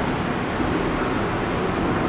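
Steady background noise: an even hiss and rumble with no distinct events.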